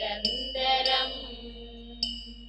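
Communion hymn with instrumental accompaniment: a sung line fades out within the first second. Then a low note is held while ringing higher notes strike about twice a second.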